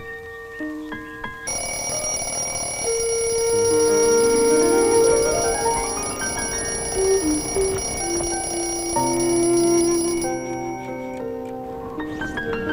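Film background music with an alarm clock ringing over it: a loud, steady ringing that starts suddenly about a second and a half in and cuts off suddenly near the end, waking the sleeper. An upward sweep rises in the music while it rings.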